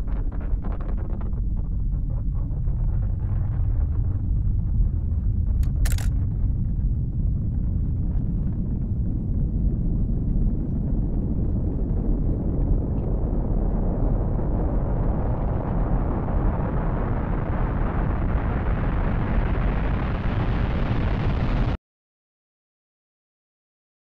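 A deep, continuous rumble that swells steadily brighter and harsher over about twenty seconds, then cuts off suddenly to silence near the end.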